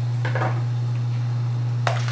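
A steady low hum, with a short light clatter shortly after the start and a single sharp knock near the end, like tableware or a bottle being handled.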